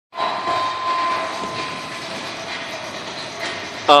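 BMX bike tyres rolling down a wooden plywood ramp, a steady rumbling hiss, ending in a loud falling shout of 'ah!' as the rider drops into the foam pit.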